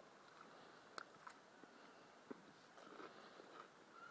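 Near silence: faint outdoor quiet with a few soft clicks, about a second in, just after that, and a little past two seconds.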